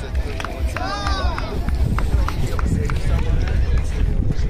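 Wind buffeting a phone microphone, with outdoor crowd chatter. A voice calls out briefly about a second in.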